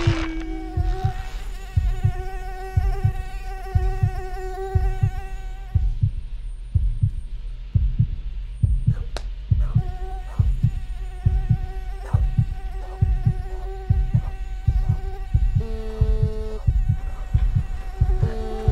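Heartbeat thumps, about one a second, over a steady droning tone. Near the end, a phone buzzes twice in short bursts with an incoming call.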